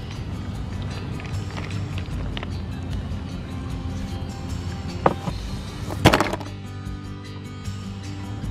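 Background music, with a sharp knock about five seconds in and a louder knock about a second later.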